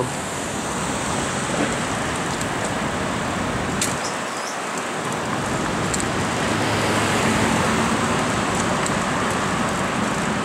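Steady rushing wind noise over the microphone of a camera riding on a moving bicycle, mixed with the sound of city street traffic.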